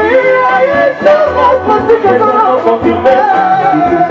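Live Congolese popular music band playing: male lead and backing vocals sung over electric guitar, bass and drums with a steady beat.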